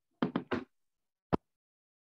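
Three quick knocks in a row, followed about a second later by a single sharp click.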